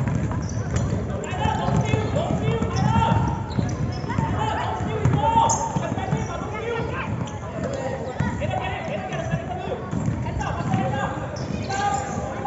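A basketball being dribbled and bounced on a wooden gym floor during a youth game, under continual background voices.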